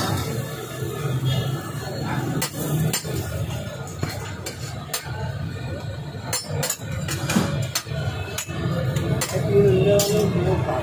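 Metal spatula clinking and scraping against a steel griddle as buns are pressed and moved, a string of irregular sharp clinks. A steady low hum and background voices run underneath.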